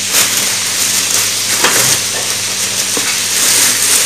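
Food frying in a pan, a steady sizzle, with a few light clicks.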